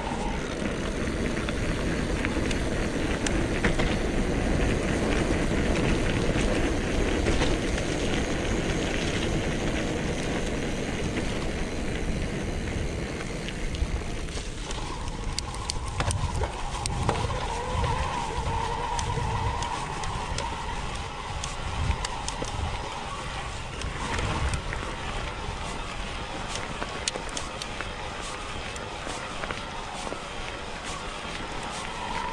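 Mountain bike rolling fast down a dirt and gravel track: a steady rush of tyre and wind noise, with rattles and clicks from the bike over bumps. A steady tone joins for about five seconds around the middle.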